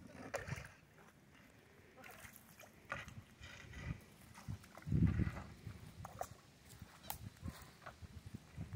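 Single wooden paddle dipping and pulling through calm, shallow lake water beside a hide-covered coracle, in intermittent strokes with small splashes and drips. A brief low rumble comes about five seconds in.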